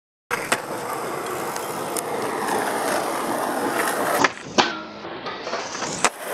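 Skateboard wheels rolling on asphalt, starting suddenly after a short silence, with a few light clicks. About two-thirds through come two sharp knocks of the board close together, the loudest sounds, then quieter rolling.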